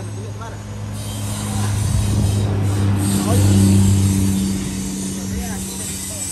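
The engine of a drum concrete mixer running steadily with a low hum. It grows louder a little past the middle, then eases off.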